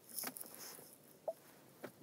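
Faint taps and rustles of a fingertip working a car's infotainment touchscreen, with a soft rustle near the start, a few light clicks and one brief faint tone just past the middle.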